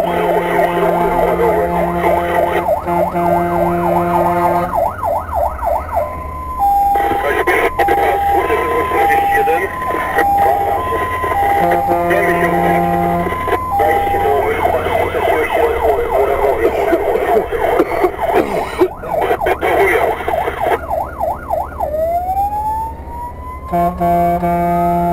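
Fire engine's electronic siren heard from inside the cab, switching from a fast yelp to a two-tone hi-lo pattern and back to the yelp, then winding up in a rising wail near the end. A low engine and road rumble runs underneath, with a steadier lower tone sounding at times.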